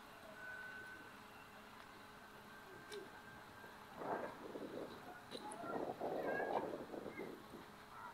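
Faint calls of seagulls over quiet harbourside background, clearest from about halfway through.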